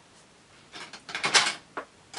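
Short clicks and clatters of a metal stitch-transfer tool (decker) being picked up and handled at a double-bed knitting machine: three brief sharp sounds in the second half, the middle one the loudest.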